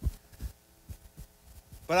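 About half a dozen soft, low thumps at irregular spacing, picked up by a handheld microphone as the man holding it moves about. A man's voice comes back in right at the end.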